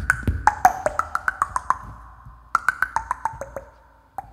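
Vocal percussion into a microphone: a quick run of sharp, pitched mouth clicks and pops, about seven a second, their pitch sliding downward. The run breaks off about halfway, then resumes more sparsely and fades away.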